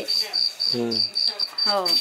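Cricket chirping steadily: a high, evenly pulsed chirp repeating about four times a second.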